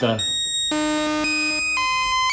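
Modular synthesizer playing a sequence from a Baby-8 step sequencer: buzzy held tones stepping to a new pitch about every half second, with delay repeats timed to the sequencer's clock.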